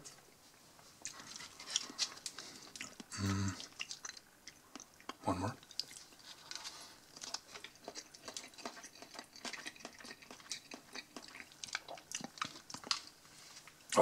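A person chewing a mouthful of soft sausage-and-cheese salad in salad sauce: quiet, wet smacking clicks of the mouth that go on throughout. There are two brief hums about three and five seconds in.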